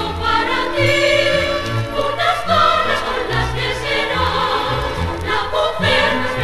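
Zarzuela number: a mixed chorus singing with a symphony orchestra, over a bass line that moves in separate notes.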